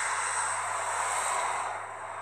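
Steady hiss of background noise with no speech, easing slightly near the end.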